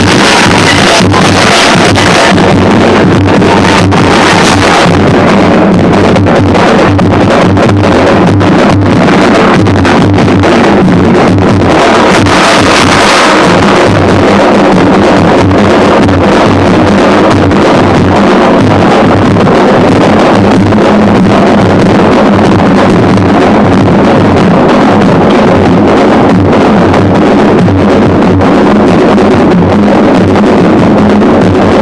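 Loud music with pounding drums, distorted because it overloads the phone's microphone.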